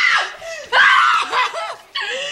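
Human voices screaming: a wavering cry right at the start, then a louder, longer one sliding up and down in pitch from just under a second in.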